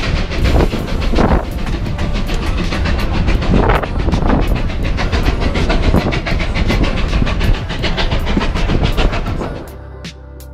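Steam-hauled passenger train running, heard from an open carriage window: loud rushing wind and track noise with a fast, even run of wheel clacks. It cuts off sharply just before the end.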